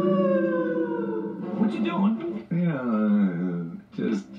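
A cartoon character's voice from a television: a long held vocal note that slowly falls in pitch, then a second vocal sound sliding down in pitch near the end.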